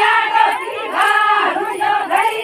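A large group of Bhil women singing a Bhili wedding song together in high, loud voices, in short rising-and-falling phrases repeated again and again.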